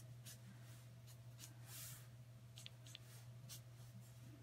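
Faint strokes of a brush-tip marker on a thin Bible page, several short irregular strokes, over a low steady room hum.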